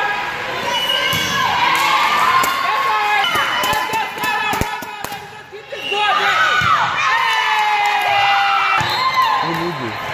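Volleyball players and spectators shouting and cheering in a large echoing gym, many voices at once with some long held calls. A few sharp knocks come just before a short lull about halfway through, after which the cheering rises again.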